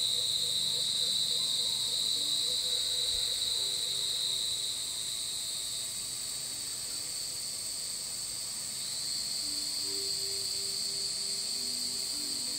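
Insects calling in one continuous, even, high-pitched chorus.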